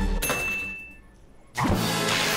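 Cartoon robot sound effect fading out with a steady high tone. After a brief quiet gap, loud rock music with electric guitar starts suddenly about one and a half seconds in.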